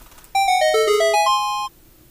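Short electronic chime jingle: a quick run of clean notes that falls and then climbs, lasting about a second and a half. It is a sound effect marking the discovery of a clue.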